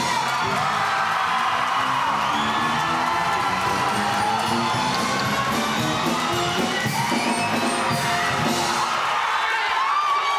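Audience cheering and whooping just after a show choir's final held chord, with many voices shouting over a steady roar and music going on underneath.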